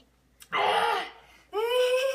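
Young children's voices: a loud breathy laugh about half a second in, then a long high-pitched squeal in the second half.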